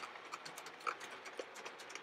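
OO gauge model Class 25 diesel and van train running on the track, with a light irregular clicking from its wheels on the rails.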